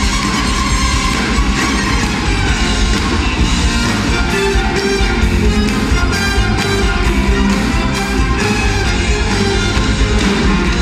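Amplified live band music with a steady beat, heard from the audience in a large concert hall.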